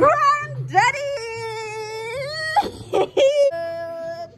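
A high-pitched voice holding long, steady notes: one drawn-out note of about two seconds that steps in pitch, a few short sounds, then another shorter held note near the end.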